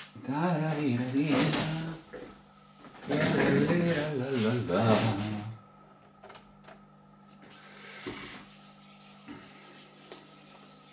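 A man's voice speaking in two short stretches during the first half. A faint steady hum and a few small clicks follow.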